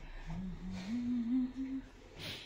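A person humming a short tune of a few notes, each a little higher than the last, for about a second and a half.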